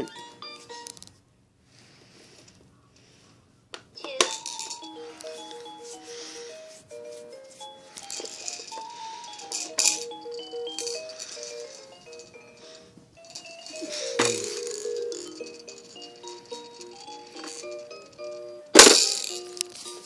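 Baby Einstein Count & Compose Piano toy playing one of its built-in electronic melodies as a run of short, even notes, starting about four seconds in after a brief pause. A few clicks and knocks come from the toy being handled, the loudest a sharp knock near the end.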